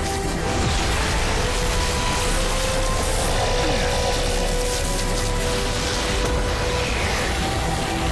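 Dramatic TV-series score mixed with dense action sound effects, with held steady tones running through it.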